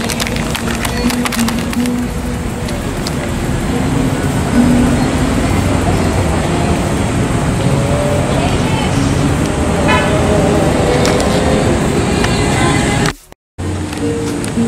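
City street traffic noise, steady and dense, with short vehicle horn toots now and then. The sound cuts out completely for a moment near the end.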